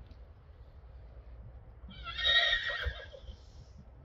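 A horse whinnying once, a high, wavering call of about a second and a half that starts about two seconds in.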